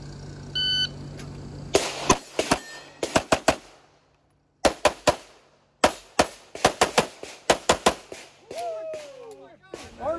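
A shot timer beeps once, then a Canik Rival 9mm pistol fires rapid strings of shots, around twenty in all, with a brief pause about four seconds in. A short call from a voice comes near the end.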